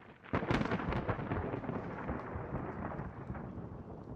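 Thunderclap sound effect: a sudden crackling crack about half a second in, then a long rumble that slowly fades.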